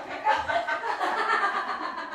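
Indistinct voices of people talking and laughing.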